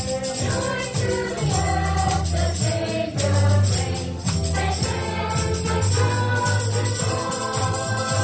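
A small gospel choir singing together with hand-clapping in time, over a deep bass line that moves in steps.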